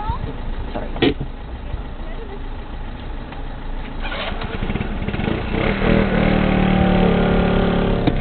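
A small car's engine, a Fiat Punto, comes to life about halfway through and settles into a steady idle, after the car had stalled off while waiting. There is a sharp click about a second in.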